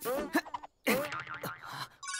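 Cartoon 'boing' sound effects: several springy pitch sweeps that wobble up and down, broken by a brief silence just under a second in.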